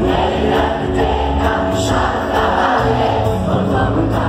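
Live band (electric and acoustic guitars, keyboard, drums) playing a reggae-pop song, with many voices singing together as the crowd sings along, heard from within the audience.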